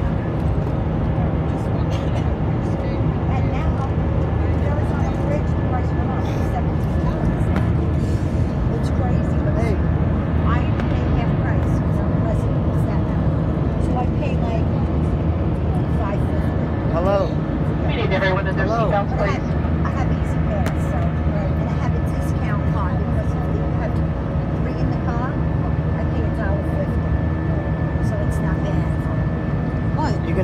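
Steady cabin drone of an Airbus A320 airliner climbing after takeoff, its jet engine and airflow heard from a window seat. Indistinct passenger voices come and go in the background, clearest about two-thirds of the way through.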